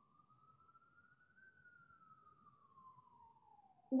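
A faint emergency-vehicle siren wailing: one tone that rises slowly for about a second and a half, then falls slowly until the end.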